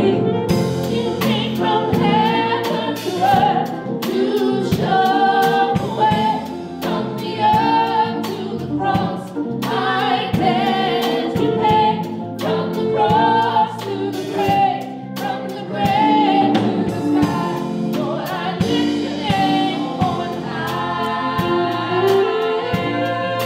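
Gospel praise team of three singers singing together in harmony into microphones, backed by a band with electric guitar and a steady drum beat.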